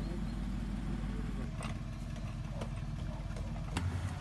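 Heavy rescue truck's engine running with a low, steady rumble, with a few faint knocks.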